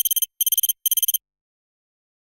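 Sound effect of rapid, high-pitched electronic ticks played as on-screen text types itself out. The ticks come in three quick bursts and stop a little over a second in.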